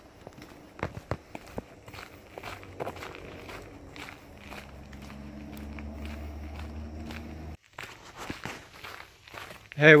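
Footsteps of a hiker walking a dirt forest trail. From about four seconds in, a steady low drone joins them and cuts off abruptly near the end. A man's voice says "hey" at the very end.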